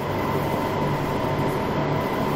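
Steady machinery noise of a water-treatment pump hall: electric pump motors running, a constant hum with a steady whine over it.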